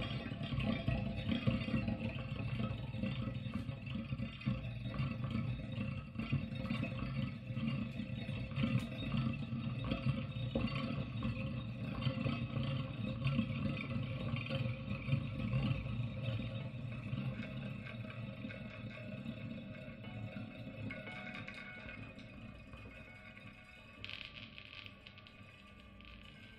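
Solo electric guitar improvising quietly, with sustained low notes under the melody, growing steadily softer through the passage.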